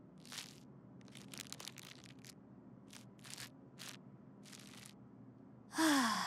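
Faint, scattered crinkling and rustling of paper, a comic book being handled, in a dozen or so short bursts with quiet gaps between.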